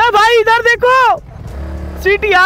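A man shouting at full voice, three drawn-out calls in the first second or so, then a motorcycle engine idling low near the end.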